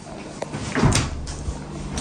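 A LERAN refrigerator door being swung shut, with a small click about half a second in and a knock about a second in as it closes.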